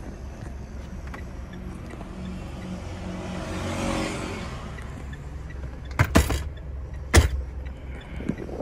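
Mitsubishi Strada's 2.5 DI-D four-cylinder turbodiesel idling, heard from inside the cab, with a brief swell in the middle. A few sharp knocks come in the last two seconds and are the loudest sounds.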